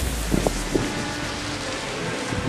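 Wind blowing on the camera microphone as a steady rushing noise, with a few faint light ticks.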